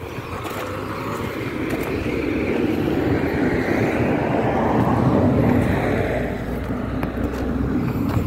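A motor vehicle passing by: its engine and tyre noise build to a peak about five seconds in, then fade.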